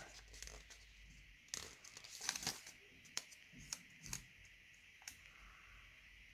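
Faint crinkling and short rustles of a paper sticker sheet being handled and a sticker peeled off its backing, in several brief bursts with a few soft ticks.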